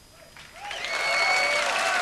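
Concert audience breaking into applause and cheering about half a second in, as the band's last sound dies away. A long whistle from the crowd rises above the clapping for under a second.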